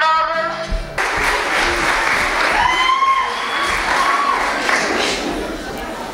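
A voice for the first instant, then from about a second in an audience clapping and cheering, with a few voices calling out over the applause.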